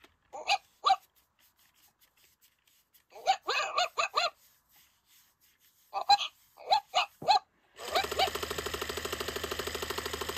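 WowWee Dog-E robot dog making electronic dog-like yips and whimpers from its built-in speaker in response to having its head petted: two short calls, then a cluster of calls, then another cluster. Near the end a steady, rapidly pulsing buzz sets in as its lit tail wags.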